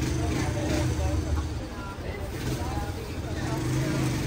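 Sleeper coach's engine idling with a steady low hum while the bus stands at the door.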